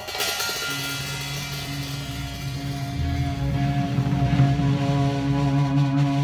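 Live band opening a song: a sudden crash on the drum kit, then the band holding one long sustained chord that grows louder toward the end.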